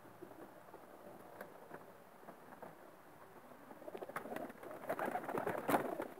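Domestic pigeons cooing in an aviary, faint at first and louder over the last two seconds. A few sharp clicks are heard along with the cooing.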